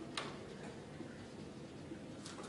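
Faint taps and strokes of a marker writing on a whiteboard, with one sharper tick just after the start.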